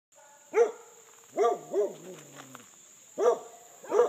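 A dog barking repeatedly: about five short barks at uneven intervals, the third trailing off in a low, falling drawn-out tone.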